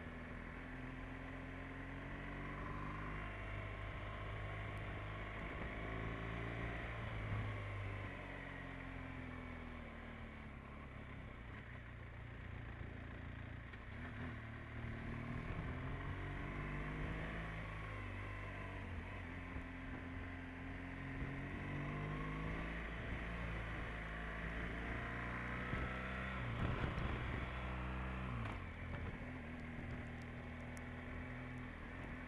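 Motorcycle engine running at road speed, its note rising and falling several times with throttle and gear changes.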